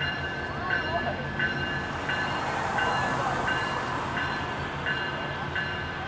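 Canadian Pacific GP20C-ECO diesel locomotive running slowly with a low, steady engine hum, while a bell rings steadily about three strokes every two seconds. Faint crowd voices underneath.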